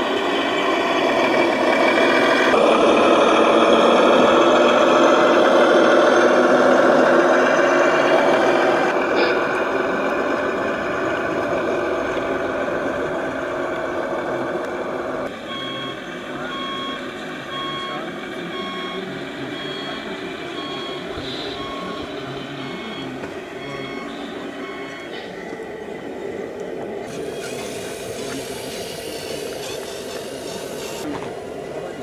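Reversing beeps from a scale RC truck's sound module: a regular train of short beeps, roughly one a second, starting about halfway through and stopping near the end. Before the beeps there is a louder, busy mix of noise.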